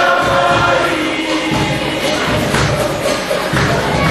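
A group of voices singing a song together in chorus, with repeated low thuds of a beat underneath.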